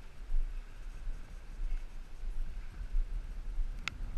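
Wind rumbling on the microphone, rising and falling in gusts, with one sharp click near the end.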